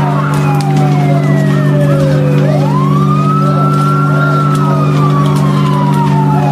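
Emergency-vehicle siren wailing slowly: the pitch sinks to its lowest a little past two seconds in, climbs back over about a second and a half, then falls gradually again, over a steady low hum.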